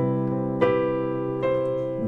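Digital keyboard with a piano sound holding a C major seventh chord (C–E–G–B, the C7M/9 of the song's intro), with further notes struck over it about half a second and a second and a half in.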